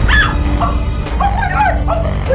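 A woman's short, rising-and-falling cries of distress, several in quick succession, over loud background music with a deep, steady bass.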